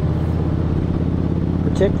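Touring motorcycle's V-twin engine running steadily at cruising speed, with wind and road noise.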